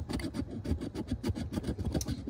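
A large metal coin scraping the coating off a paper scratch-off lottery ticket in rapid, repeated strokes.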